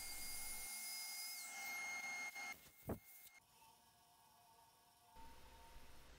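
Faint, steady high-pitched whine of a wood lathe running with a bowl spinning on it. The whine drops away about halfway through, after a brief short sound, leaving near silence.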